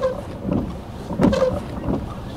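Strong gusty wind buffeting the microphone: a rough low rumble that swells twice.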